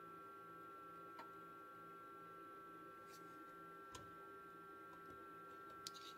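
Near silence: a faint steady high whine, with a few soft clicks from an oscilloscope's vertical position knob being turned.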